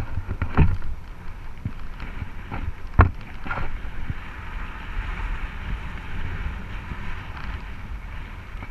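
Mountain bike rolling along a dirt and gravel trail: wind rushing over the camera microphone over steady tyre noise. A sharp knock from the bike jolting about three seconds in, and a smaller one just before.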